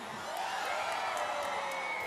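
Large concert crowd cheering and screaming steadily, with a few long high screams standing out above the general noise.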